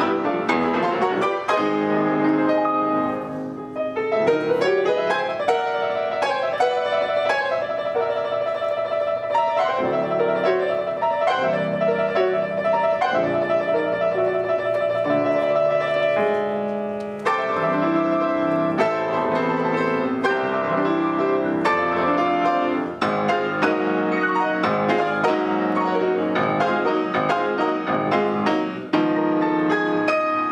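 Two grand pianos playing a novelty piano duet in G-flat, dense and busy throughout. In the middle one high note is repeated rapidly for several seconds.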